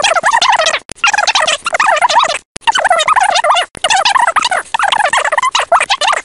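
Turkeys gobbling, several calls overlapping in loud bursts of a second or so with brief breaks between them.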